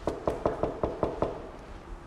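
Knuckles knocking on an apartment door: a quick run of about seven knocks over the first second or so, then stopping.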